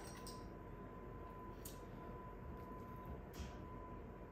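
Faint scrapes of two metal spoons scooping thick muffin batter into paper liners in a muffin tin, three soft strokes, over a faint steady high-pitched hum.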